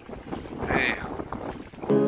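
Wind buffeting the microphone in uneven gusts, with a brief higher sound about a second in. Flute music starts right at the end.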